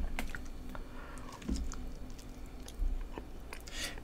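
A person chewing a piece of mango coated in chamoy, heard as quiet, scattered wet mouth clicks.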